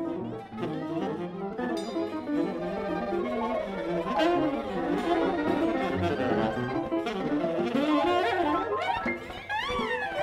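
Live improvised jazz ensemble: a saxophone plays a busy melodic line over piano, with the band's other instruments filling in underneath. Near the end the saxophone bends and wavers its high notes.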